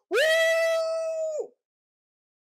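A woman's voice giving one long, high-pitched cry of 'whee!', held at a steady pitch and cut off about a second and a half in.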